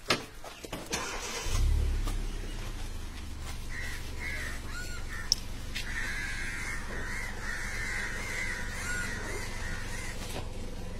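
A vehicle engine starts about a second and a half in, then runs on with a steady low rumble.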